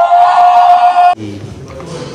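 A man's long, high vocal exclamation, sliding up and then held on one note for about a second before it cuts off suddenly. Quieter room sound with voices follows.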